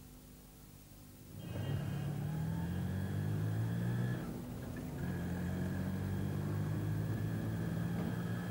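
A motor vehicle engine running steadily, starting suddenly about a second and a half in and dipping briefly near the middle, over a faint hum.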